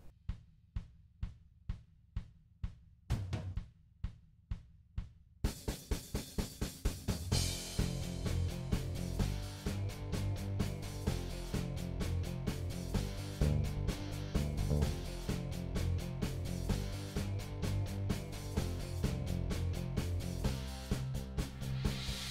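Background music: a drum beat alone at first, with the full backing track coming in about five seconds in and running on with a steady beat.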